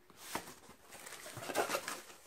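Rustling and scraping of a cardboard shipping box being handled, with a string of light knocks and clicks that grows busier toward the end.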